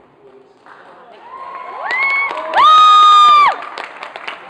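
Audience cheering and clapping, with high-pitched whoops shrieked close to the microphone. The loudest is one long held 'woo' from about two and a half seconds in to near the end.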